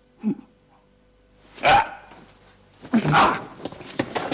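A man imitating a dog's bark: a short bark just after the start, then two loud barks about a second and a half apart.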